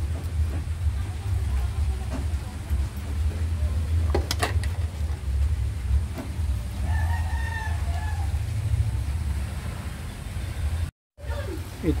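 A rooster crows once, a call of about two seconds beginning about seven seconds in, over a steady low rumble. A single sharp knock comes about four seconds in.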